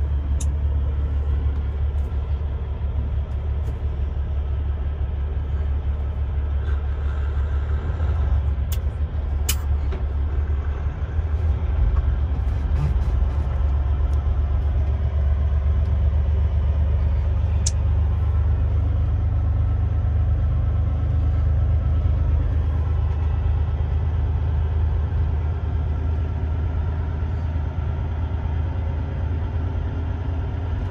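Semi truck's engine and road noise heard inside the cab while driving slowly through town: a steady low drone that gets a little louder about eleven seconds in, with a few brief sharp clicks.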